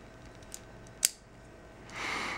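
A faint click about half a second in, then a single sharp metallic click about a second in: a Gerber 600 multitool's tool snapping into its locked position.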